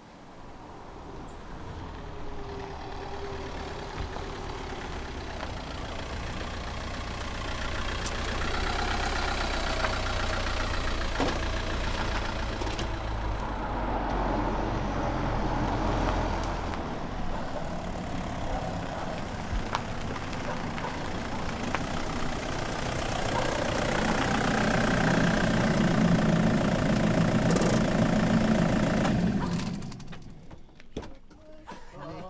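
A car engine running and growing steadily louder, then cutting off suddenly near the end.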